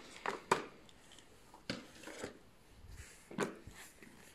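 Light clicks and taps of wooden coloured pencils being handled on a table, a handful of separate knocks spread over a few seconds.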